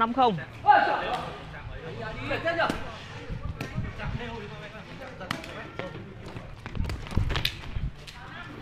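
A đá cầu (Vietnamese kicked shuttlecock) rally: irregular sharp knocks of feet striking the shuttlecock and shoes scuffing on the tiled court. There is a loud shout about a second in.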